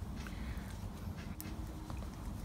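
Knitting needles clicking lightly as stitches are worked: a few short ticks over a steady low hum.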